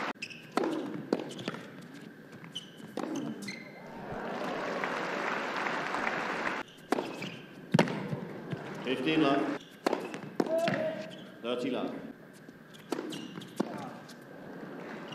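Tennis ball bounced on a hard court before a serve, sharp knocks about half a second apart, then racket strikes on the ball. A spell of crowd noise comes in the middle, and a few short voice calls come later.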